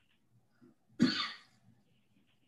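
A person coughs once, briefly, about a second in.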